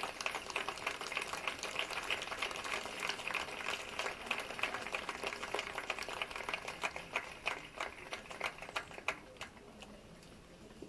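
Rapid, irregular clicking and crackling, many clicks a second, that thins out and fades near the end.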